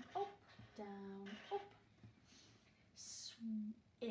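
A woman's voice slowly sounding out letter sounds, with pauses between them: a drawn-out vowel about a second in, then a brief hiss and a short hummed sound near the end.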